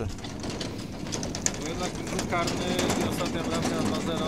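Steady outdoor background noise with faint, distant voices a little past halfway.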